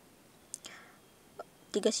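A quiet pause holding a soft breath with a small click about half a second in, then a woman's voice starts near the end.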